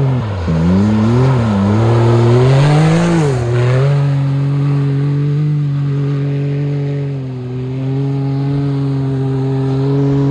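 Can-Am Maverick X3 side-by-side's three-cylinder engine revving up and down in the first few seconds as it spins its studded tyres on ice. It then holds steady high revs through a long slide, dipping briefly near the end.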